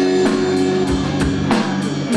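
Live rock band playing: drum kit strikes over sustained guitar chords.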